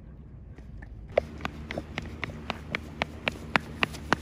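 Quick, brisk footsteps of shoes on an asphalt road, starting about a second in and going at about four steps a second, over faint outdoor background noise.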